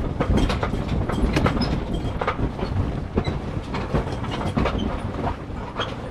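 Steady low rumble of wind and water with irregular rattling knocks and clatter throughout, the jumble of noise of a small sailboat moving through the water.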